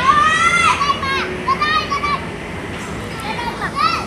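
Children's high-pitched voices in short calls, rising and falling in pitch, over the steady noisy background of children playing.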